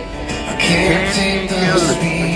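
Live amplified acoustic guitar playing with a male voice singing over it.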